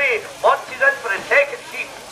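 Speech only: a man's commentary voice, in short rapid phrases.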